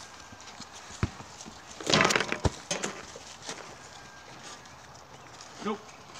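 Knocks and rustling from people playing with a ball among dry brush: a single knock about a second in and another near two and a half seconds, with a loud crackling rustle around two seconds. A short spoken word near the end.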